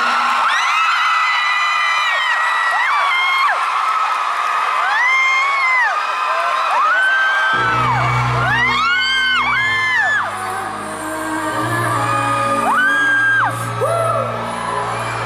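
Crowd of fans screaming and whooping over live pop music. The music has no bass at first; a bass line and beat come in about halfway through while the screams go on.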